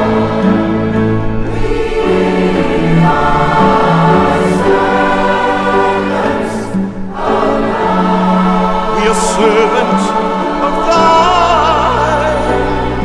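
Mixed choir singing with a chamber string orchestra accompanying, in held, slow-moving chords. The sound dips briefly about seven seconds in, then the singing resumes and a deeper low part enters near the end.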